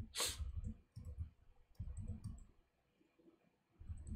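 Faint, scattered clicks of a computer keyboard and mouse as code is edited, with a short hiss about a quarter second in.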